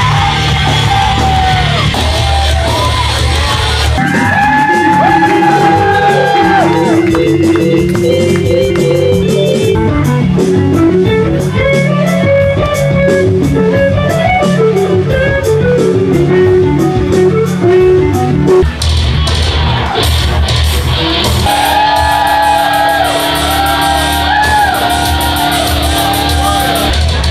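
A live rock band playing loud in a club: electric guitar riffing over drums, with a singer's voice at the start and again near the end.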